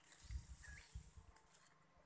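Near silence: faint outdoor background with a few soft low thumps.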